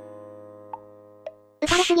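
Background music: a held chord fading slowly, with two faint short notes. Near the end it is cut by a short, loud noisy sound effect as the synthesized narration voice starts again.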